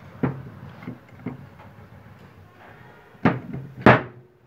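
Metal clunks of forklift transmission parts being handled: a splined shaft and gears knocking against a clutch drum and the metal workbench. Four sharp knocks, the last two about half a second apart near the end and loudest.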